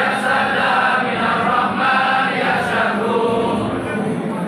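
A large congregation chanting together in unison, a devotional Islamic chant sung in continuous phrases by many men's voices.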